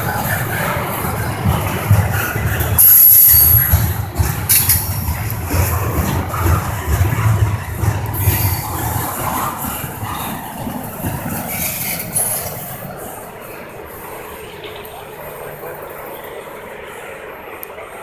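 Double-stack intermodal container train passing close: steel wheels on rail rumbling and clattering under the well cars, with a few brief high-pitched bursts. About thirteen seconds in the sound drops off and fades as the end of the train moves away.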